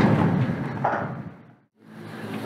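Steady outdoor background noise with a short faint sound about a second in, fading out to a moment of silence and then fading back in, as at an edit.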